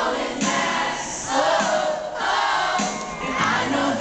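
Boy band pop song performed live: male lead vocals into handheld microphones over backing music, mixed with loud crowd noise from the audience.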